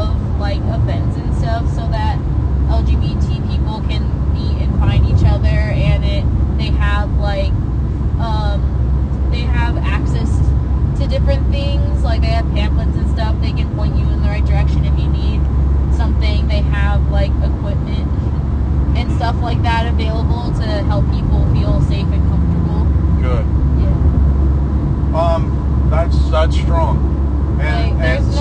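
A man talking over a steady low rumble.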